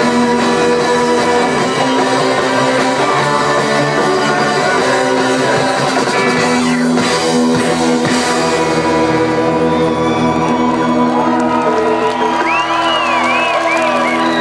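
Live rock band playing an instrumental stretch, with electric guitars and a drum kit to the fore and held notes underneath. A few high swooping sounds come in near the end.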